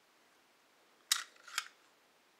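Two sharp metallic clicks about half a second apart from the action of a Ruger Mark III Target .22 pistol being worked by hand.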